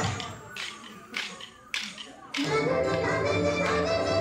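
The dance music breaks off for about two seconds, leaving a few sharp clacks of dancers' hand-held sticks struck together, roughly half a second apart, before the music comes back in.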